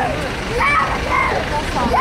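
People's voices in short utterances over a steady low rumble of street traffic.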